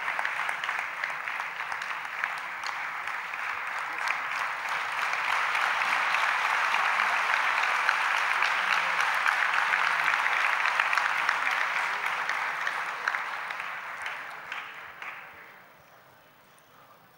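A large audience applauding, the clapping swelling in the middle and then fading away toward the end.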